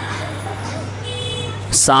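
Pause in a man's amplified speech, filled by a steady low electrical hum from the sound system and faint background voices. The next word begins with a sharp hiss at the very end.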